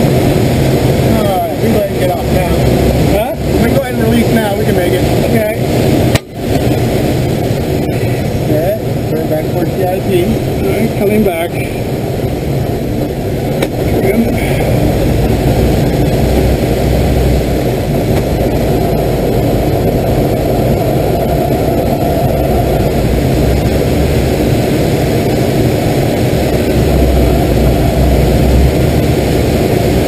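Steady, loud rush of air over a glider's canopy, heard inside the cockpit in flight.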